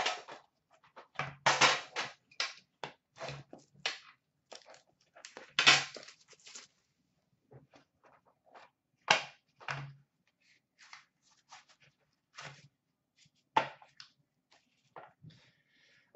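Irregular clicks, knocks and scrapes as an Upper Deck The Cup hockey card tin is opened: the metal lid comes off and the tin and its black inner box are set down and handled on a glass counter. The loudest knocks come about a second and a half in and about six seconds in.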